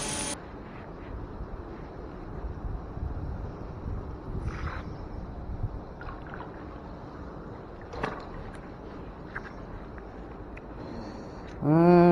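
Fishing magnet on a rope being hauled up out of canal water: faint water sloshing and low handling noise, with a few light knocks. Near the end comes a man's drawn-out vocal sound as the magnet comes up.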